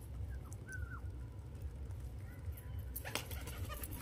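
Domestic pigeons feeding on a concrete rooftop: faint scattered clicks of pecking, a few short high chirps in the first second, and a brief loud flurry of pigeon wing flaps about three seconds in, over a steady low wind rumble.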